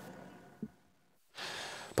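Faint sound fading to near silence, with a brief soft blip about half a second in; then, about a second and a half in, a man's audible breath in, just before he starts speaking.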